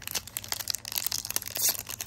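Foil wrapper of a Magic: The Gathering booster pack crinkling and crackling as it is pulled and torn open by hand, a rapid run of small crackles. The wrapper is hard to open.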